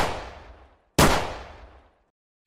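Two gunshots about a second apart, each a sharp crack that dies away within a second.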